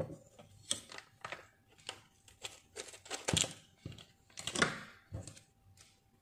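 Irregular clicks and crinkles of a plastic dish-soap refill pouch being handled and moved about, a dozen or so short sharp sounds at uneven intervals.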